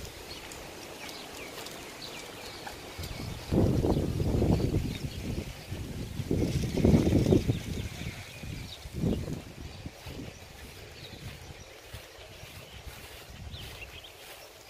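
Small birds chirping faintly in the open air, broken three times by uneven low rumbling gusts of wind on the microphone: a long one about three and a half seconds in, another around seven seconds, and a brief one near nine seconds.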